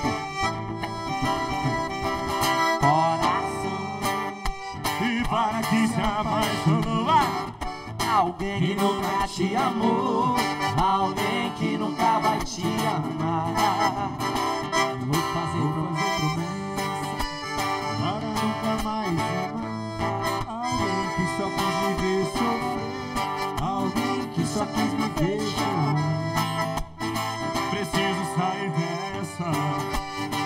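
Live acoustic band music: an accordion and a strummed acoustic guitar accompanying two male singers on microphones.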